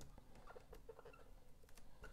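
Faint marker strokes on a whiteboard: scattered small scratches, taps and brief squeaks, close to silence.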